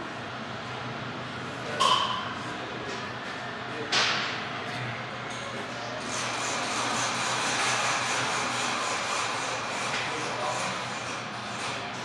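Workshop background noise with indistinct voices, a short high ping about two seconds in and a sharp knock at about four seconds.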